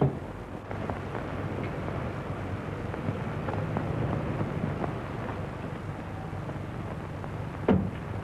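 A steady low rumble under a noisy hiss, with a short sharp sound near the end.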